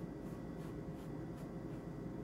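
Watercolor brush stroking across wet paper: a faint, soft scratchy brushing in short strokes, a couple each second, over a low steady room hum.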